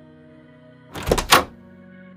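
Soft background music with held tones, cut across about a second in by a quick run of three or four thudding transition sound effects, the last one the loudest.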